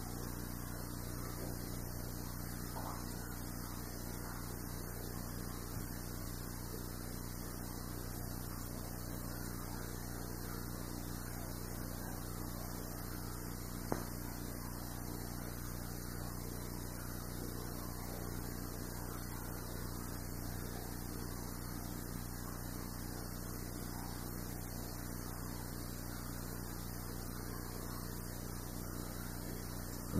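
Steady low electrical hum with hiss from the recording, with one short sharp click about halfway through.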